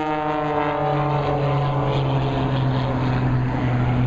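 Aerobatic stunt plane's engine running loud and steady, its note falling in pitch in the first second and then holding level as the plane pulls out of a spiral dive into a low pass.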